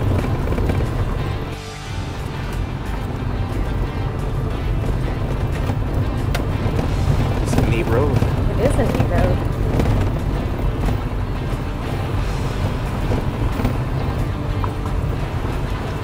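Toyota Tacoma pickup driving on a gravel road: a steady low rumble of engine and tyres, dipping briefly about two seconds in, with music playing over it.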